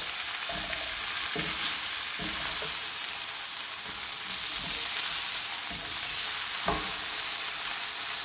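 Corn tortilla soaked in red chile sauce sizzling steadily as it fries in hot oil in a skillet, with a few faint knocks of the spatula against the pan.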